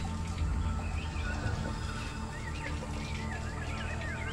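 Birds chirping and warbling in quick repeated calls from about a second in, over soft background music with a low steady hum.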